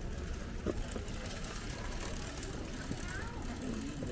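Street ambience in a pedestrian lane: faint voices of passers-by over a steady low rumble, with a single short knock under a second in.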